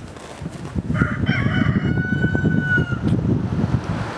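A rooster crows once, starting about a second in: a rougher opening followed by a long held note that falls slightly at the end. Underneath runs the low rumble of an approaching car.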